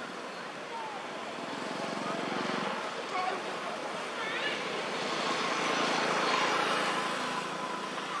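Outdoor background noise with indistinct voices and a passing engine, a vehicle or aircraft, that swells to its loudest about six seconds in and then fades. A few short chirps sound around the middle.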